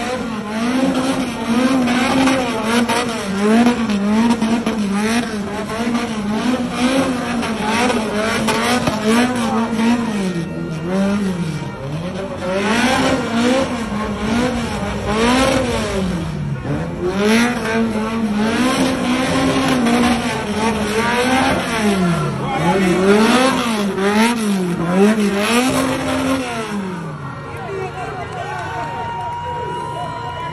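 Car engine revved hard, its pitch rising and falling over and over about once a second as the throttle is worked while the car is thrown around barrels in a gymkhana-style run.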